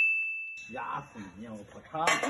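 A single bright ding, a bell-like chime sound effect that rings and fades away over about a second and a half. Faint voices come in under it about half a second in.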